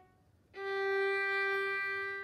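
A bowed violin playing one long sustained note. It starts about half a second in, has a slight break near the end, and fades out.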